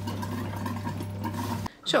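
Small electric water pump on a boat running with a steady low hum, water flowing through the pipes as it pushes the air out of the freshly filled water lines. The hum stops abruptly near the end.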